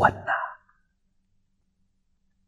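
An elderly man's voice drawing out the last syllable of a spoken Mandarin word, trailing off within the first half second, then silence.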